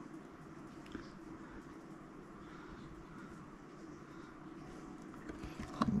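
Quiet, steady room noise with faint sounds of a paintbrush working gouache on paper, a small tap about a second in and a short rustle near the end.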